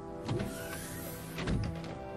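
Sci-fi transport tube sound effect, two short mechanical surges about a second apart, over a steady synth music bed.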